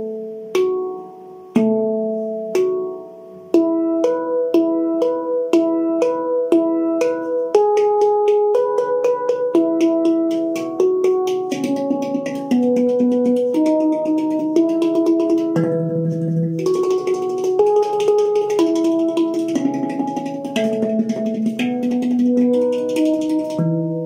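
Steel handpan played with alternating right- and left-hand single strokes moving around its notes: a few slow strokes about a second apart, each left to ring, then steadily faster strokes that build into a fast roll in the last third.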